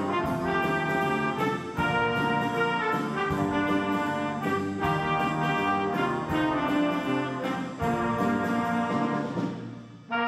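A school jazz band's trumpets, trombones and saxophones playing together in a large gymnasium. The music runs in phrases, then dies away into a short break near the end.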